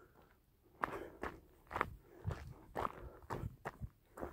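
Footsteps of a person walking on a dry grassy path, starting about a second in and going at about two steps a second.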